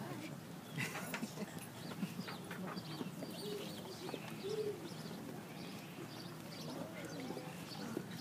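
Faint birds chirping in scattered short calls over a low murmur of voices from a standing crowd.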